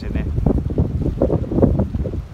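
Wind buffeting the microphone with an irregular rumble, mixed with people's voices.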